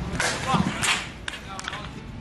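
Footballs being struck hard on a training pitch: two or three sharp, noisy hits, each about half a second apart, with a brief shout from a player between them.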